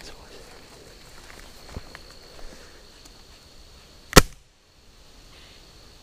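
A single shot from a pellet gun about four seconds in: one sharp crack over faint, quiet ambience.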